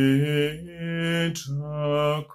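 A man singing a hymn solo and unaccompanied, in slow, held notes.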